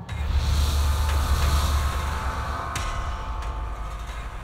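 Dramatic background score: a low rumbling swell comes in at the start with held tones above it, the upper part thinning out partway through.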